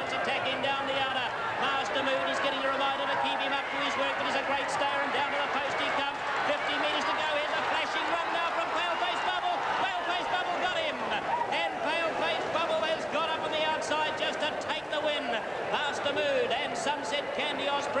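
A race caller's fast, continuous commentary, with no break, over what may be crowd noise.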